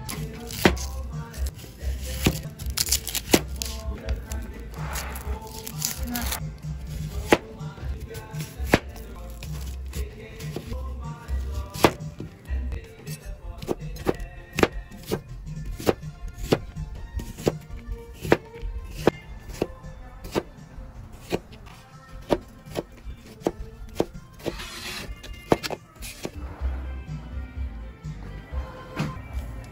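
Large kitchen knife chopping a white onion on a plastic cutting board: a steady run of sharp knocks, about one to two a second, over background music.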